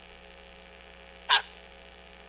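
A single brief, clipped voice fragment from a caller on a poor phone line, about a second and a half in, over a steady low hum.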